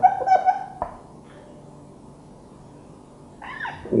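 Felt-tip marker squeaking on a whiteboard as a word is written: a high, pitched squeak in the first second, ending in a short tap. Then quiet room tone.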